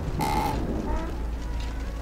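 Horror-trailer sound design: a steady low rumbling drone, with a brief hiss-like swell just after the start and faint, thin creaking tones over it.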